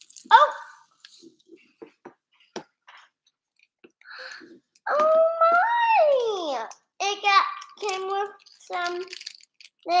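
Small clicks and crinkles as a plastic toy capsule and its foil packets are handled. About halfway through, a child's voice makes a long vocal sound that slides up and then down in pitch, followed by several short vocal sounds.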